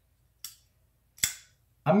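Two sharp metallic clicks from a Civivi Dogma folding knife being worked by hand, its blade snapping open or shut against the detent. The second click is louder, with a brief ring.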